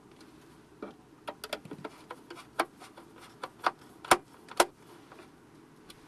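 Irregular light clicks and ticks as the lid of a Grundfos CU 200 control box is closed and its screws are turned with a hex key, ending with two sharper clicks.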